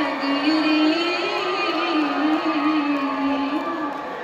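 A woman singing a slow Punjabi melody live, in long held notes with small turns and wavers, over a live band backing, heard from the audience in a reverberant concert hall.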